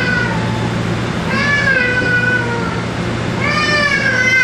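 Steel wheels of a SEPTA Route 36 Kawasaki light rail car squealing against the rails on a curve: high, wavering squeals that sag slightly in pitch, one about a second in and another starting near the end, over the car's steady low hum.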